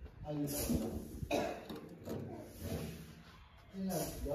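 Indistinct voice sounds with no clear words, including short cough-like or throat-clearing sounds.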